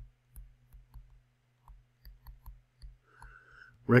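A stylus tip tapping and clicking on a tablet surface during handwriting: about a dozen light, irregular clicks, roughly three a second. A faint steady low hum runs underneath.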